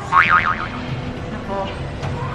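A cartoon "boing" sound effect: a short high tone that wobbles up and down several times within about half a second, near the start.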